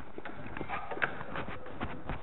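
A run of irregular light clicks and knocks over a steady hiss, the sharpest one about a second in.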